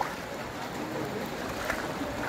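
Deep floodwater swishing and churning steadily around the legs of someone wading through a flooded street.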